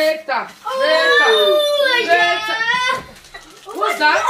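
A child's long, high-pitched excited squeal lasting about two seconds, after a short shout.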